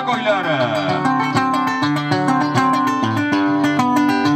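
Acoustic guitar playing a milonga, a steady run of plucked notes over bass notes, as the backing for a payador's gaucho verses.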